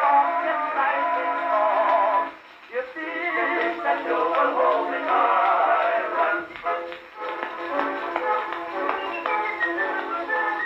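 An early acoustic recording on an Edison Blue Amberol cylinder playing back through the horn of an Edison cylinder phonograph, with a thin, midrange-only sound and no deep bass. The music drops away briefly about two and a half seconds in, then carries on.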